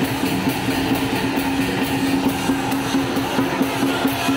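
Music with a steady, quick beat over a held low note.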